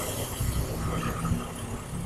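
A motorcycle passing by, its engine sound steadily fading away.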